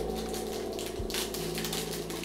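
Soft rustling as an item is handled, with a brief louder rustle about a second in, over a steady low hum.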